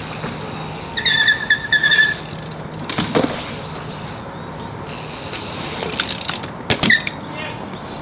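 BMX bike riding through a concrete skate park bowl, its tyres rolling on the concrete with a steady rumble. A short high squeak comes about a second in, a sharp knock about three seconds in, and two quick knocks near the end.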